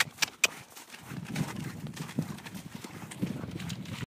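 Hoofbeats of horses trotting over snowy, icy, muddy ground: a few sharp clicks in the first half second, then softer, uneven thuds.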